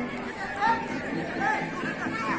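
Several people talking and shouting over one another, with two louder calls about two-thirds of a second and a second and a half in.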